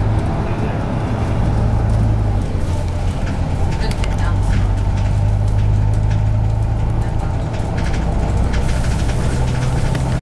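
Bus engine and drivetrain heard from inside the passenger cabin while the bus drives, a steady low drone. Clicks and rattles from the bodywork come about four seconds in and again near the end.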